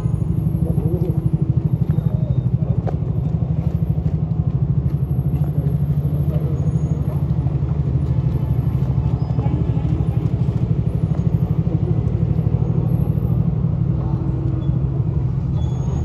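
SUV engine running close by, a steady low rumble, with faint indistinct voices.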